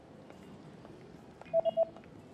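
Three short electronic beeps at one pitch in quick succession, about a second and a half in, over a steady low background hiss and hum.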